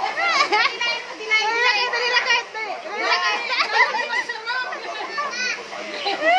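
Several young children's high voices chattering and shouting over one another.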